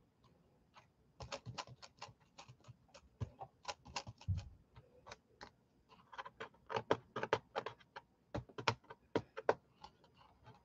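Craft supplies being handled on a desk, with a plastic stencil among them. A run of irregular light clicks and taps, sparse at first and thicker in the second half.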